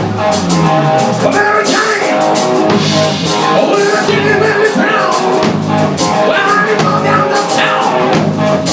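A live rock band plays a song together: electric guitar, bass guitar and drum kit, with a man singing over them.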